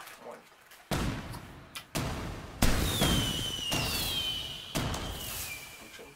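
An edited-in sound effect: four sudden booms about a second apart, the third the loudest, with a whistling tone that glides downward from about three seconds in.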